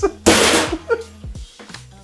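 A man's loud, breathy burst of laughter about a quarter second in, lasting about half a second, then dying down.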